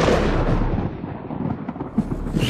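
A deep rumbling boom from a logo-animation sound effect, fading over the first second or so and ending in a short sharp hit near the end.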